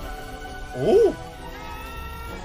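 Film score starts abruptly, sustained notes held under the scene. About a second in, a short loud cry rises and falls in pitch over the music.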